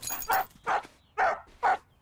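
Cartoon spaniel barking: a run of short yips, about two a second.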